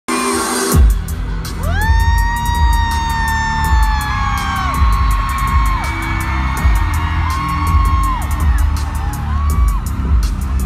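A live band's intro played loud through a concert PA, with heavy bass and a steady drum beat that kicks in about a second in. Fans in the crowd let out long, high whoops over it, several times.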